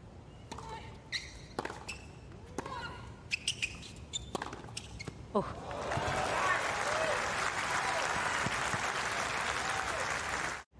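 Tennis rally on a hard court: sharp racket strikes, ball bounces and short shoe squeaks for about five seconds. When the point ends the crowd bursts into loud cheering and applause with shouts, which carries on to the end.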